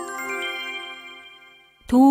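A bright chime jingle: several ringing tones struck together at once, fading away over about two seconds, with a voice starting right at the end.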